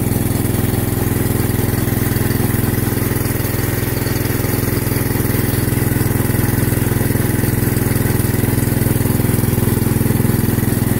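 Small petrol engine of a portable water pump running steadily at constant speed, pumping water to scour peat out of a pipe.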